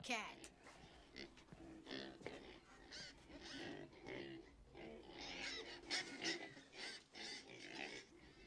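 Pigs grunting in a pen, a string of short, irregular, fairly faint calls.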